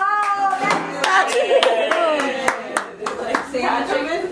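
A few people clapping in separate, distinct claps, with voices calling out and cheering over the applause.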